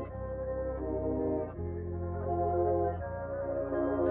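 Background music: soft, sustained chords over a steady bass, changing every second or so.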